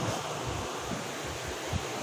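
Steady background room noise, an even hiss with faint irregular low rumbles and no distinct events.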